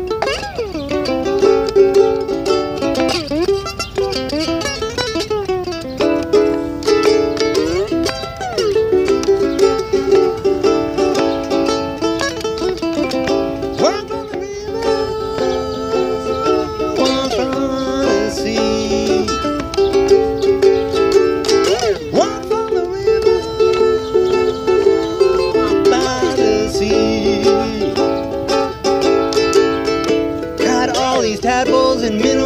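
Solo slide ukulele playing a blues: plucked notes and chords, with notes gliding up and down in pitch under the slide.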